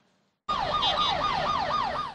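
An emergency vehicle siren in a fast yelp, its pitch sweeping sharply downward about three times a second, starting about half a second in.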